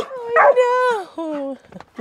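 Excited dog barking: three drawn-out calls, the middle one long and falling in pitch, the last lower and shorter.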